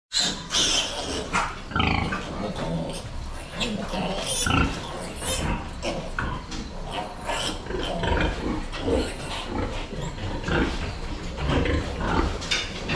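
Many pigs in a farrowing barn, sows and piglets, grunting and squealing in a constant irregular chorus, with short high squeals and scattered sharp knocks throughout.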